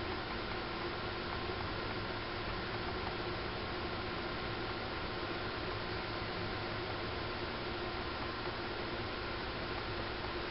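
Steady hiss of background noise with a faint steady hum running under it; no distinct sounds stand out.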